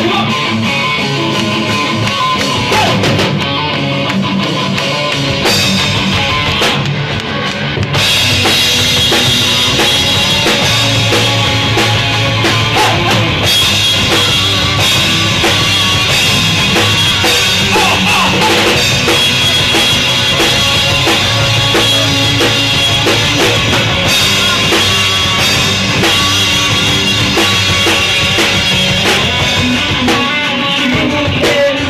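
Rock band playing live, with a drum kit and electric guitars. About eight seconds in the full band comes in harder and the sound grows louder and brighter.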